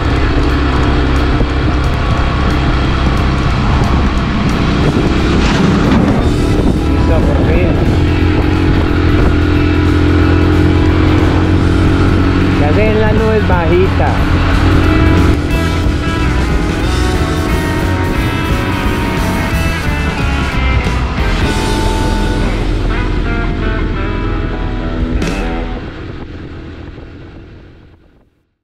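Background music with a singing voice over the steady running of a small motorcycle engine, fading out over the last two seconds.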